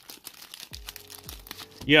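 Thin clear plastic card sleeve crinkling as trading cards are handled, a run of small crackles; a voice says "yeah" near the end.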